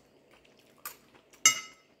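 Two light clinks of a small feeding utensil, about half a second apart. The second is louder and has a brief ringing tail.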